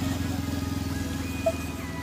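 A steady low engine drone with a fine even pulse, and a few faint held higher tones in the second half.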